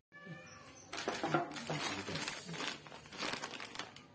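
Clear plastic parts bag crinkling as it is picked up and handled, starting about a second in and going on in irregular rustles.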